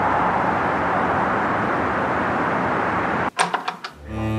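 Steady, even hum of distant city traffic ambience. It cuts off shortly before the end, giving way to a few short knocks.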